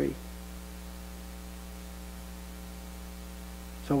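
Steady electrical mains hum, a set of unchanging low tones over a faint hiss, left bare in a pause of speech.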